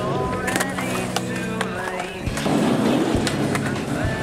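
Skateboard sounds on concrete, with several sharp clacks of boards popping and landing, under a music track with sustained tones.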